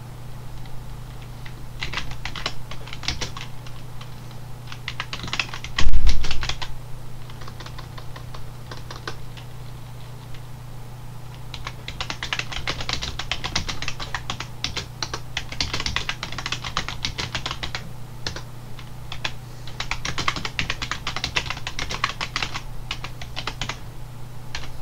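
Typing on a computer keyboard: bursts of rapid keystrokes separated by pauses. A single low thump about six seconds in is the loudest sound, and a steady low hum runs underneath.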